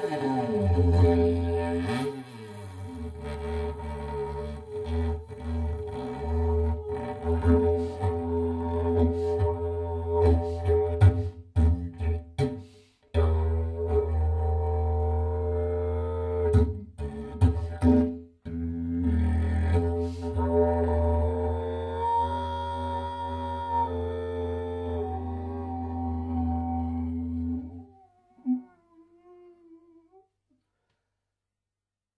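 Didgeridoo playing a steady low drone with shifting overtones above it, broken off briefly twice and stopping near the end.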